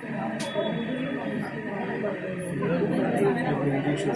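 Several people talking over one another: indistinct, overlapping chatter, with a brief click about half a second in.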